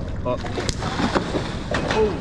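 People talking over steady wind and water noise, with a few brief sharp knocks or splashes.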